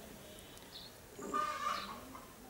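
A domestic fowl calling faintly in the background, one short pitched call starting about a second and a half in.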